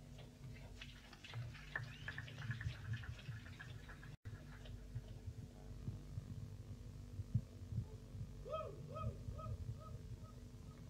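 Quiet low throbbing hum from the band's equipment on a 1989 live cassette recording, between songs. There is a short dropout about four seconds in, and near the end a faint tone repeats a few times with a wavering pitch as the next song begins.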